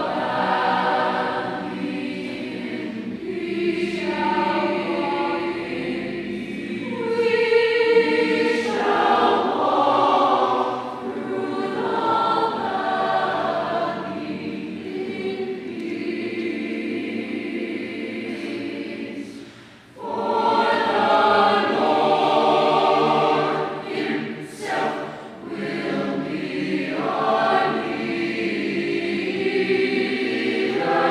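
Mixed choir of women's and men's voices singing together, with a short break a little past the middle before the voices come back in.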